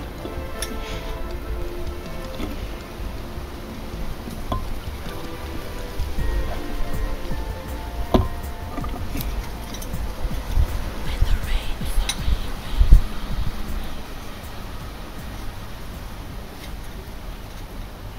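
Garden fork digging into a potato bed: low thuds and scraping in the soil, a few sharp clinks of the tines on stones about 8 and 12 seconds in, and one heavier thump just after. Under it runs a steady low rumble, with faint music in the background.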